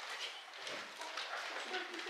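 Thin Bible pages rustling and flipping as several people leaf through to a passage, a scatter of soft crackles and taps, with a short stretch of quiet voice near the end.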